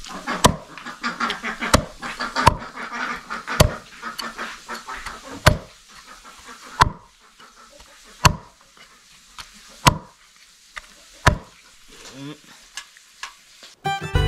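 A cleaver chopping boiled chicken on a chopping board: about nine sharp chops, spaced a second or two apart, each one cutting through meat and bone into the board.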